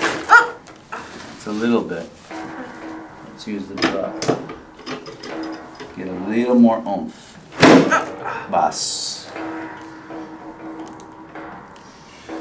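Chiropractic adjustment on a treatment table: two sharp knocks, one right at the start and one a little past the middle, as thrusts are delivered to the back. Murmured voice sounds come between them.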